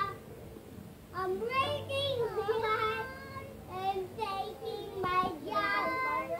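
A toddler girl singing in short phrases with sliding pitch, starting about a second in after a brief pause.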